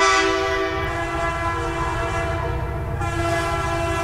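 Recorded train sound effect: a train horn sounding a long, steady chord, sounded again about three seconds in, over the low rumble of a rolling train.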